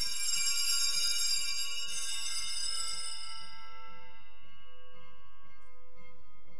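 Altar bells rung at the elevation of the host after the consecration: a bright, jingling cluster of small bells that sounds at once and dies away over about three seconds, leaving a faint ring.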